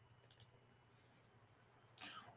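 Near silence with a faint computer mouse click about a third of a second in, as the website's sign-up button is clicked.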